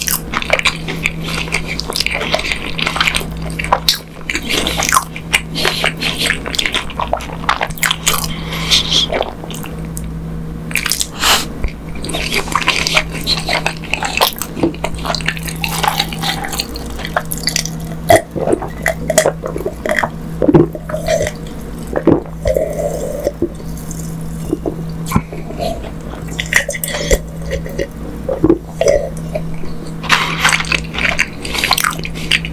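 Close-miked wet mouth sounds: lip smacks and tongue clicks in quick irregular succession, with sips and gulps of a dark drink from a glass around the middle. A steady low hum runs underneath.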